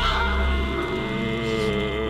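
Background music on a steady low drone, with a few slowly bending tones above it.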